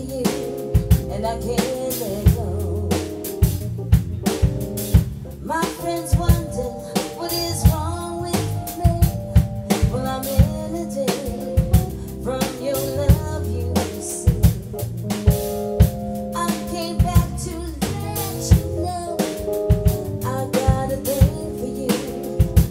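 Live R&B band playing: a drum kit keeping a steady beat on kick, snare and rimshot, an electric bass guitar line, and held chords on a Kawai MP7SE stage keyboard, with a woman singing in places.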